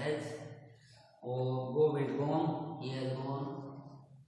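A man's voice speaking in slow, drawn-out phrases, with a short break about a second in.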